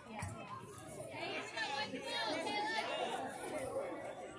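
Faint, indistinct chatter of voices, with no words made out.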